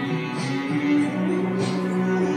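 Instrumental backing music for a Japanese ballad, with plucked guitar over held notes and no voice singing.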